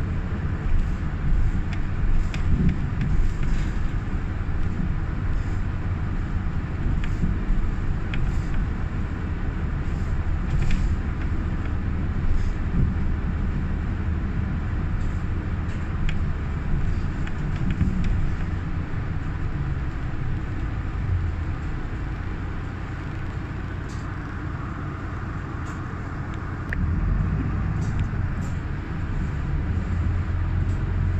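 Interior of a moving city bus: a steady low drone of engine and road noise, with scattered small rattles and clicks. It quietens for a few seconds past the middle and picks up again near the end.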